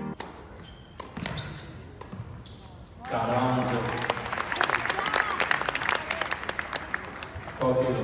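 Sharp knocks of tennis balls being hit and bouncing on an indoor court, a few at first and then many; from about three seconds in, people's voices talk loudly over them in the hall.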